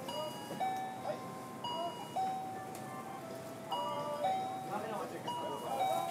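A simple electronic chime melody of held, bell-like notes. The same short phrase repeats after about three and a half seconds, over a faint murmur of voices.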